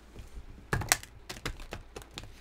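Tarot cards being handled and shuffled in the hands: a quick run of sharp card clicks and snaps, starting about a third of the way in.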